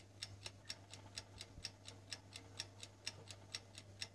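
A clock ticking faintly and steadily, about four ticks a second, counting down an answer timer.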